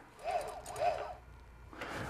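Two short squeaks about half a second apart from the dispenser's gear-motor-driven cam mechanism, its cam lobe catching against the steel needles, over a faint low hum.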